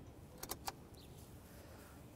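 Low steady background rumble with three quick, light clicks about half a second in.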